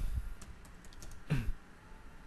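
A few light keystrokes on a computer keyboard as a stock ticker symbol is typed in, with a soft thump a little past the middle.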